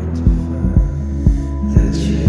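Background music: an instrumental stretch of a song with sustained bass notes and a steady beat, about two beats a second.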